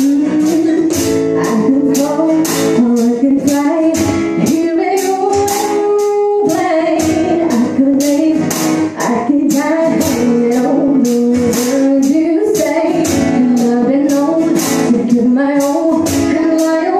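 Live acoustic band: a woman singing a melody over strummed acoustic guitar, with hand percussion keeping a steady beat of two to three strokes a second.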